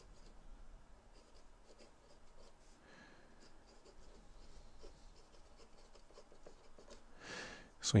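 Felt-tip marker writing on paper: faint, scattered scratching strokes as a box, an arrow and words are drawn.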